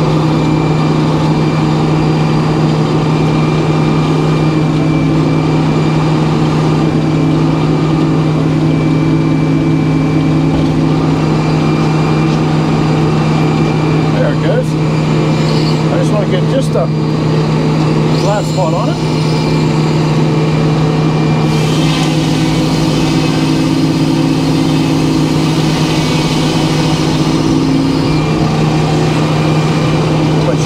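Circular sawmill running steadily on its engine, a constant drone with overtones. About two-thirds of the way in, a higher rushing noise and extra hum join as the carriage moves the white pine log up to the spinning blade.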